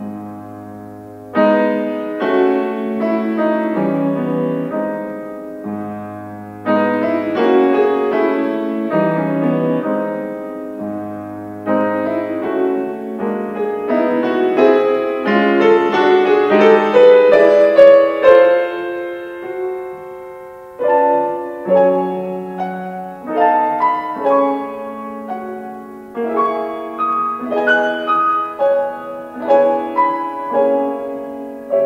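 Solo Yamaha grand piano playing a classical minuet. Deep bass notes mark the phrases in the first half, and the music swells to its loudest a little past the middle.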